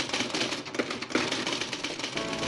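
Typewriter sound effect: a rapid, irregular clatter of keystrokes as text is typed out.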